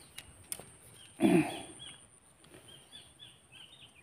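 Small birds chirping in a quick series of short, high notes repeated throughout, with a brief louder, lower sound a little over a second in.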